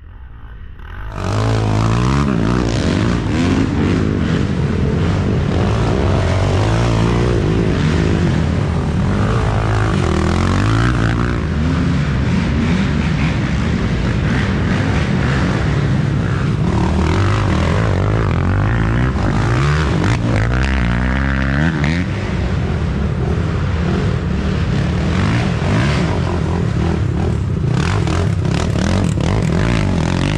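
Racing ATV engines revving up and down with the throttle as several quads pass one after another through the mud, the engine sound starting about a second in.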